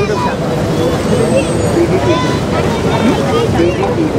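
Crowd chatter: many voices talking at once over a steady rush of floodwater pouring through the barrage gates.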